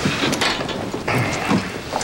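A run of irregular clicks and knocks with rustling noise, mechanical-sounding, with a brief scraping rustle about a second in.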